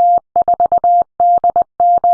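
Morse code: a single beep tone keyed in quick short and long pulses, dots and dashes.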